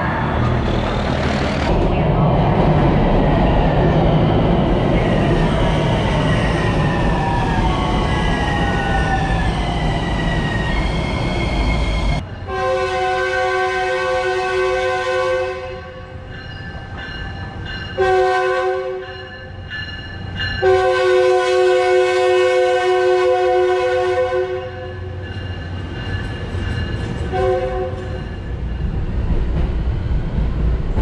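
Train passing with a whine that slides down in pitch over the first dozen seconds, then a multi-tone train horn sounding four blasts: long, shorter, long, and a short one near the end.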